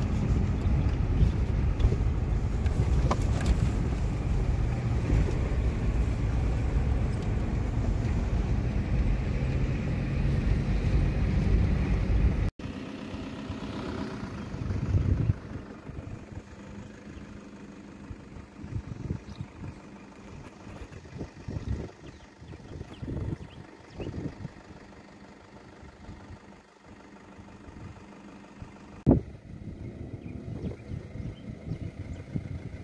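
Car cabin noise while driving on an unpaved dirt road: a loud, steady low rumble of tyres and engine. It stops suddenly about twelve seconds in and gives way to a much quieter outdoor background with irregular low bumps of wind on the microphone.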